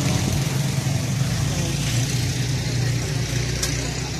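A motor vehicle engine idling close by, a steady low drone with street noise around it.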